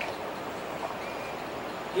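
Steady background hiss with no speech, and a faint brief sound about a second in.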